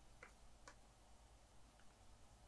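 Near silence: room tone with two faint ticks in the first second and a fainter one near the end, from hands handling a crochet hook and the work.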